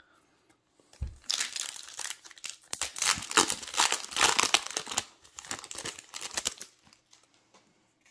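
A foil Yu-Gi-Oh booster pack wrapper being torn open and crinkled by hand: a dense crackling that starts about a second in and dies away near the end.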